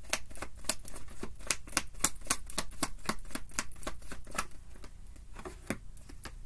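Tarot deck being shuffled by hand: a quick, irregular run of card clicks and flicks, several a second, thinning out a little before the end.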